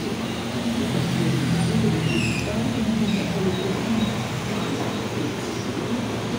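Steady low rumble of street traffic coming in through an open restaurant front, mixed with indistinct voices, with a few faint high squeaks about two seconds in.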